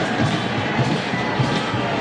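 Steady stadium crowd noise from the fans in the stands, with music-like chanting or playing mixed in.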